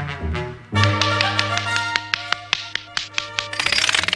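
Cartoon film score: brass-band notes, then from under a second in a held low note under a run of sharp taps, turning into a fast rattle of clicks near the end.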